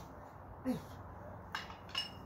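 A man's short grunted shout with falling pitch, the kind of cry given with a hard strike. About a second later come two sharp, clinking knocks, and a brief high ring follows the second.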